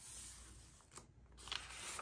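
Faint rustling of paper as the pages of a Midori MD notebook and a translucent sheet over them are handled and turned, with a soft tap about a second in and louder rustling near the end.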